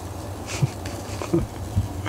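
A steady low hum, with a few faint, short soft sounds over it.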